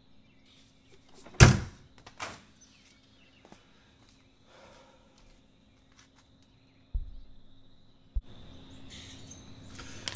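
A hard motorcycle saddlebag lid shut with one loud thunk, then a smaller knock and a few faint clicks of handling. A dull low thump with some rustling comes near the end.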